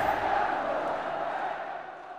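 Crowd noise in the show's intro sting, a dense mass of voices that fades out steadily over the two seconds.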